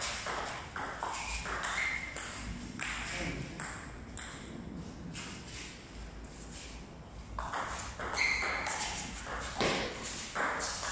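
Table tennis rally: the celluloid ball ticking back and forth off the bats and the table in an uneven run of sharp clicks.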